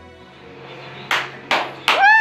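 Three sharp hand claps, less than half a second apart, starting about a second in, as background music fades out.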